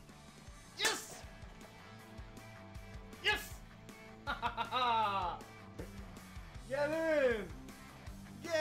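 Background rock music under a man's wordless excited vocal sounds: two short sharp cries in the first few seconds, a burst of laughter about halfway, and one long rising-and-falling yell near the end.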